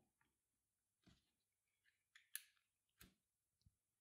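Near silence, broken by a few faint clicks and handling noises from hands working with the cord and tools, the loudest a little past two seconds in.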